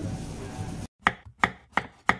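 Background music cuts off abruptly just under a second in. It is followed by four evenly spaced sharp knocks, about three a second, as an intro sound effect.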